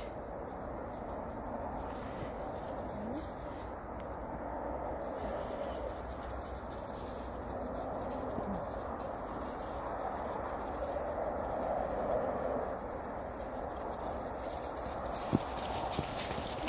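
Footsteps crunching through snow, a steady low-level crunch throughout, with one short click near the end.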